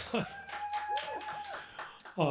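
A man's voice holding a thin, high, steady note for about a second and a half, with short rising-and-falling glides under it. The acoustic guitar has stopped.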